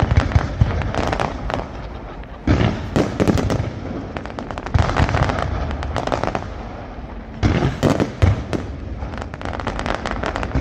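Aerial firework shells bursting in a dense, continuous barrage of rapid reports. The volley swells into louder waves about two and a half, five and seven and a half seconds in.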